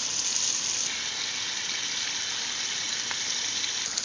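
Chicken and potato masala frying in a steel pan: a steady sizzle.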